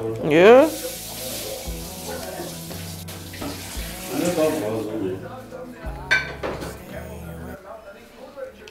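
Hands working a raw chicken in a glass baking dish lined with baking paper: the paper rustles and the glass dish clinks lightly, over background music with a steady low bass. A quick rising swoop, the loudest sound, comes about half a second in.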